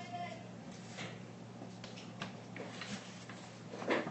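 Faint background sound under a steady low electrical hum, with a few soft scattered noises and one brief louder sound just before the end.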